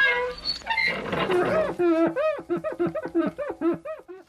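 Horse whinnying: a high call that falls into a long fluttering run of short pulses, about five a second.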